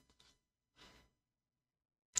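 Near silence: room tone, with one faint, brief soft sound a little under a second in.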